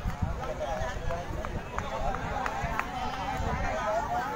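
Distant chatter and calls from players and spectators around the playing field, over a low rumble, with a few scattered sharp clicks.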